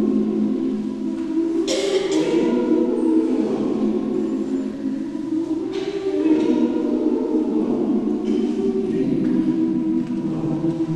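Mixed choir of men's and women's voices singing a cappella in sustained chords, with the whole choir landing together on a few crisp consonants about two, six and eight and a half seconds in.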